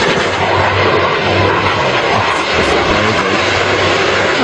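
Jet aircraft engines heard as the planes fly past: loud, steady jet noise with a low hum underneath.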